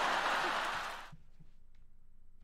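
Theatre audience applauding at the end of a stand-up comedy routine. It cuts off suddenly about a second in, leaving only faint room noise.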